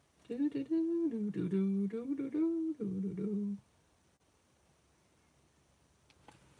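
A woman humming a short tune of a few held notes that step up and down in pitch, for about three seconds.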